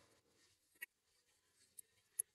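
Near silence: room tone, with two faint short ticks, one near the middle and one near the end.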